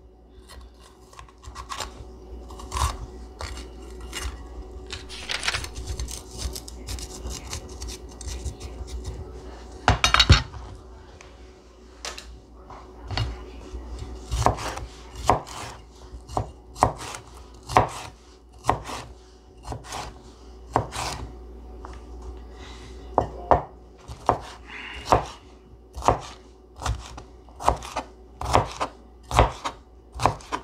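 Chef's knife cutting a green bell pepper on a cutting board: scattered knife knocks at first, with one louder knock about ten seconds in, then steady dicing, about two chops a second, through the second half.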